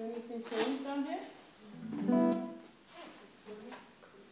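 Live acoustic guitar with a voice: a few strummed chords ring out under a sung line, the loudest held note about halfway through.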